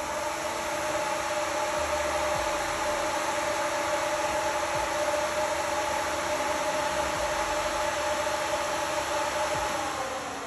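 A motor running with a steady hum that holds several even tones over a hiss; at the very end it begins to wind down, its pitch sliding lower as it slows.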